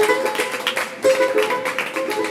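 Live Persian music: a long-necked lute plucked in quick melodic notes, with a hand drum tapping sharp strokes alongside.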